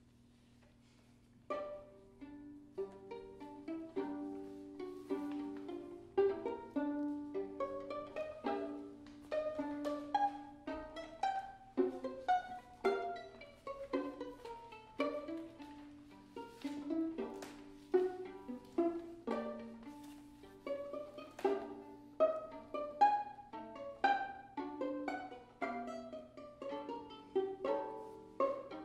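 Two violins playing a tango duet, mostly plucked (pizzicato) in short, sharply struck notes that start about a second and a half in.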